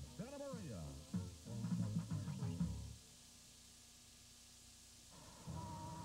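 Music with singing or sung speech from a TV commercial for about three seconds. It breaks off into about two seconds of near-quiet with a low steady hum, and a steady tone with music comes back near the end.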